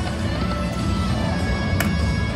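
Autumn Moon video slot machine playing its electronic game music and tones over a low casino din, with a sharp click near the end.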